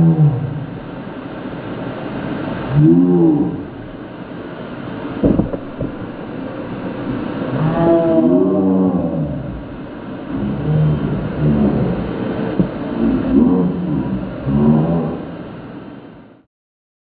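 Slowed-down, pitched-down audio of a Dyson DC35 stick vacuum running, heard as a steady low drone. Deep, drawn-out voice sounds rise and fall over it, and there is one sharp knock about five seconds in.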